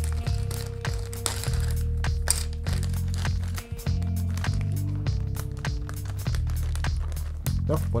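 A small clear plastic bag crinkling and rustling in the hands as a toy part is put in and the bag is closed, over background music with a steady bass line.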